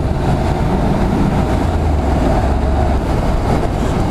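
Honda NC750's 745 cc parallel-twin engine running steadily as the motorcycle cruises along an open road, with heavy wind rushing over the microphone.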